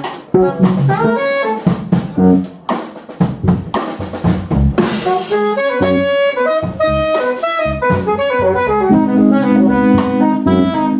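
Live jazz trio: an alto saxophone plays quick runs of notes over a drum kit and electric keyboards. A held low keyboard chord comes in near the end.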